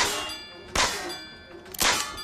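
Three sharp metallic clangs about a second apart, each ringing on afterwards: shots striking the metal targets of a carnival-style shooting gallery in the film's soundtrack.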